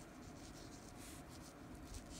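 A pen tip scratching faintly across paper in a series of short, irregular strokes.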